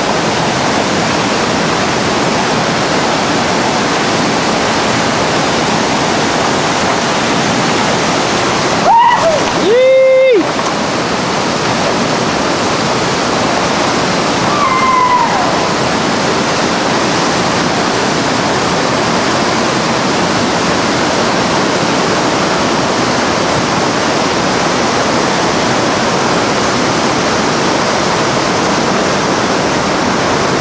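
Steady rushing of whitewater rapids. About nine seconds in a person gives a loud shout lasting over a second, and a shorter, higher, falling call follows about six seconds later.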